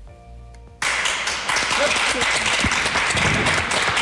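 Studio audience applause that breaks out suddenly just under a second in and keeps going, over background music.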